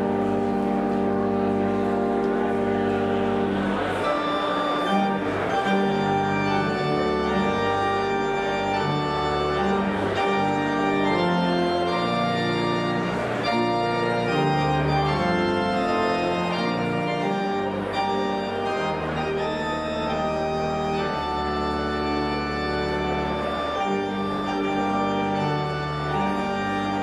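Organ music played on a church organ: sustained chords that change every second or two over long-held deep bass notes, at an even loudness.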